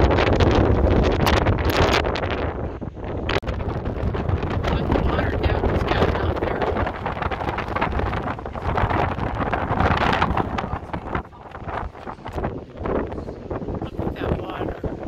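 Strong gusty wind blowing across the microphone, a deep, rumbling rush that swells and eases. It is loudest at the start and again about ten seconds in, and drops off briefly soon after.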